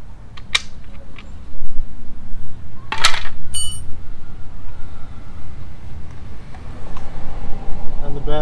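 Plastic cover and push pins being pulled off a Kawasaki ZX-14's bodywork: a few sharp clicks, then a loud knock about three seconds in, followed by a short high metallic ring.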